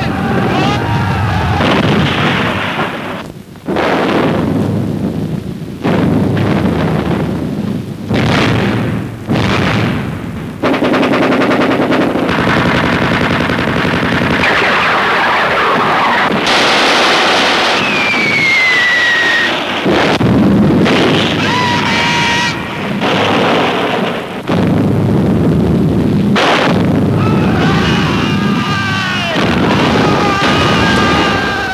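Loud battle sound effects on a 1940s film soundtrack: sustained gunfire and explosions one after another, with rapid machine-gun bursts near the middle and a falling whistle a little past halfway.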